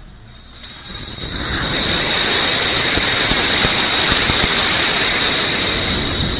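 Stacked pallets of glass bottles collapsing: a long, loud crash of breaking and clinking glass that builds over the first second or two and then keeps going, with a steady high whine over it.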